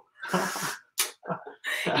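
A woman's sudden breathy outburst, a startled exclamation, then a sharp click a moment later, breaking into laughter near the end.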